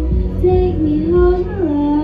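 A girl singing a slow melody into a handheld microphone over backing music, holding long notes and sliding down to a lower note near the end.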